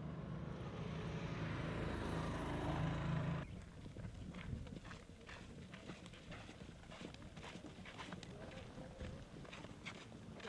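Engines of a military convoy, an armoured personnel carrier and trucks, running as they drive along a dirt road, growing slightly louder. About three and a half seconds in, it cuts to quieter, irregular footsteps and scuffs of people walking on a dirt road.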